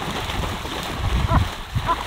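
Water splashing as a trout thrashes at the surface of a small pond, over the steady rush of water pouring in from an inflow pipe.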